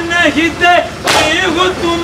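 Group chest-beating (matam): many hands slap chests together in one loud, echoing stroke about every second and a half, once as it begins and again about a second in. Men's voices chant a noha in the gaps between the strokes.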